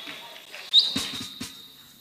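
A thin, high steady whine of PA-system feedback slides up briefly and then holds, fading slowly. A few soft knocks sound through the sound system under it.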